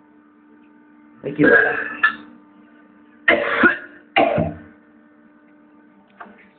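A man coughing and retching into a toilet bowl in three harsh bouts, with a steady electrical hum underneath.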